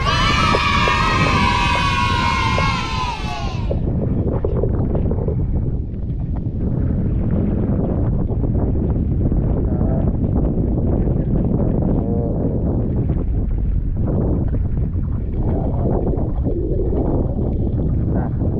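Wind buffeting a body-worn camera's microphone on an open boat at sea, a steady low rumble. For about the first four seconds a loud, high, pitched sound with slowly falling tones rides over it, much brighter than the rest of the audio.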